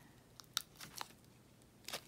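Paper being handled by hands: a few faint, scattered crinkles and ticks from a small glitter-paper die cut and its tape backing, the sharpest one near the end.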